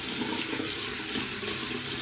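Steady hiss of a water tap running into a sink.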